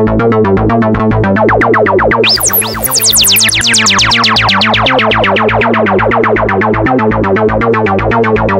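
Softube Modular software synthesizer playing a fast, steadily repeating sequenced pattern through a Valhalla Delay plugin in ping-pong mode. About two seconds in, a high swooping tone comes in. After that, bright tones fall steadily in pitch for the rest of the passage.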